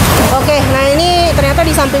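A person talking, with a low steady hum underneath.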